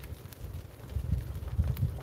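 Low, uneven rumble and buffeting of a vehicle on the move, with heavier thumps in the second half as a fire engine passes close by in the other lane.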